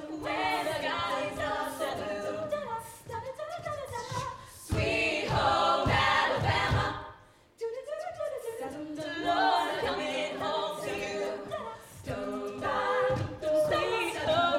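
All-female a cappella group singing live in close harmony, with vocal percussion keeping the beat. The sound is loudest in the middle, breaks off briefly about seven and a half seconds in, then the singing resumes.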